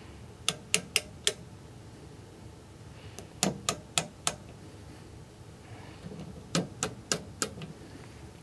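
Rotary decade switches on an Eico 1171 resistance decade box clicking through their detents as the knobs are turned. The clicks come in three runs of about four, each click roughly a quarter second apart, with pauses between the runs.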